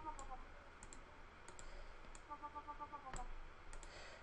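Computer mouse clicks, with a faint pulsing synthesizer note from a software wobble-bass patch sounding twice, each note dipping in pitch as it stops.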